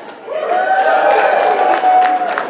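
One long, steady 'woo' cheer held for nearly two seconds over crowd noise in a large hall, with a few claps starting near the end.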